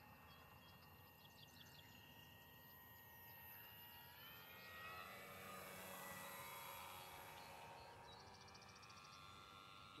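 Faint propeller and motor whine of a radio-controlled model eagle aircraft. It grows louder and rises in pitch from about four seconds in as the model passes close, then eases off and holds steadier. Faint bird chirps come early on, and a rapid chirping trill comes near the end.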